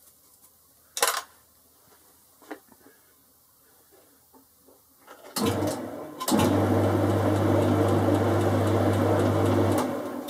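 A Boxford lathe starts up about five seconds in and runs with a steady hum while the four-jaw chuck spins, then is switched off just before the end. Before it starts there is a sharp click about a second in, then quiet.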